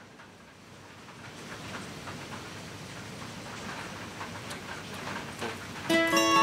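Indoor background hum of a large store, with faint footsteps and light ticks on a concrete floor as a man and dog walk along an aisle. It grows gradually louder over the first few seconds.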